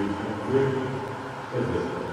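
A man's low voice speaking in short phrases over the steady background noise of a large indoor pool hall.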